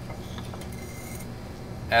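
Steady low background hum with faint handling noise: crumpled aluminium foil rustling as it is put down on the bench, about a second in, while a glass bottle is picked up.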